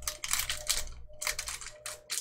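Foil Pokémon booster pack wrapper crinkling and crackling in the hands as it is being torn open, an irregular run of short, sharp crackles.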